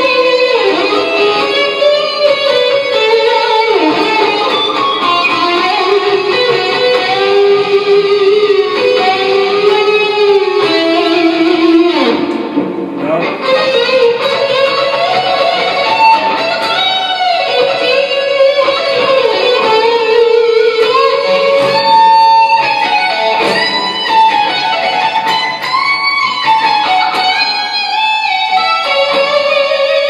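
Gibson Les Paul Studio electric guitar played through Amplitube 2 amp-simulation software with digital reverb, digital delay and chorus, heard over studio monitors in the room: a continuous lead line of sustained notes with bends and vibrato.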